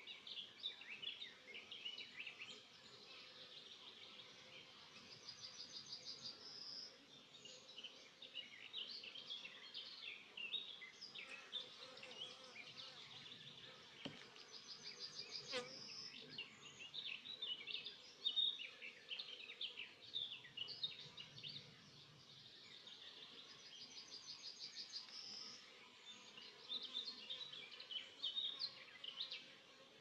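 Honeybees buzzing faintly and steadily around an open hive, with birds singing short chirping phrases and fast trills over the buzz. A single light knock comes about halfway through.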